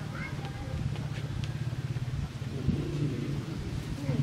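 A small engine running steadily in the background, with a fast, even pulse, under a few faint words of speech.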